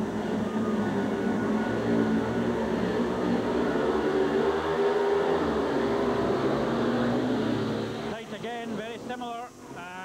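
Four speedway motorcycles' single-cylinder engines running at high revs as the riders leave the start gate and race into the first bend, the engine pitch rising and falling. About eight seconds in the engine noise drops away, leaving voices.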